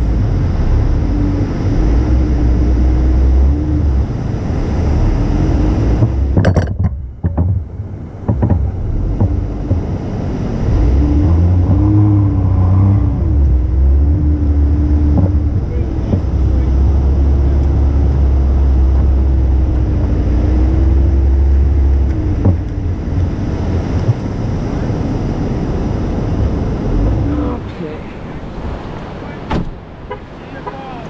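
Jeep engine running under load with a steady low rumble and a slightly wavering engine note, towing a stuck vehicle through soft sand on a kinetic rope. It is loudest through the middle and eases off near the end.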